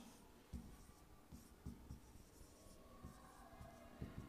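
Faint stylus taps and rubbing from handwriting on an interactive touchscreen board, with a few soft, short low knocks as the pen meets the glass.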